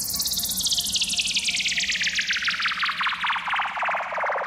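Breakdown in a hard-bass DJ remix: the drums drop out and a rapid stream of electronic pulses sweeps steadily downward in pitch over a steady low bass tone, building toward the bass drop.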